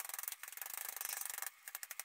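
Plastic-gloved hands rubbing and squishing hair dye through wet hair: a fast wet crackle that stops suddenly about three quarters of the way in, followed by a few separate clicks.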